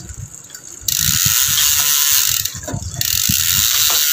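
A bicycle's rear freewheel clicks in a fast, continuous buzz as the rear wheel and cassette spin freely on the stand. It comes in two spells: from about a second in to about two and a half seconds, then again from three seconds on.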